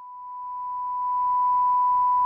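Broadcast line-up test tone: one steady pure tone that swells in level over the first second and a half, then holds.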